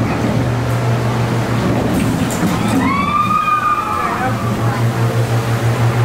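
Dark-ride ambience: a steady low hum throughout, pulsing quickly in the second half. About halfway through, a voice-like tone slides up and then down.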